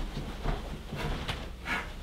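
Quiet room with a few faint off-screen sounds, and a distant voice saying "all right" near the end.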